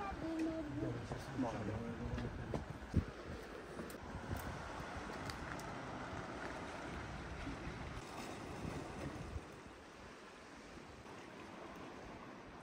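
A steady wash of wind and sea noise, with a low rumble that drops away about three-quarters of the way through. A few faint voices are heard in the first couple of seconds, and there is a single sharp knock about three seconds in.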